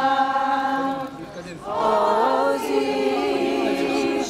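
A group of women's voices singing together in unison with long held notes. There is a short break about a second in, and then the singing picks up again.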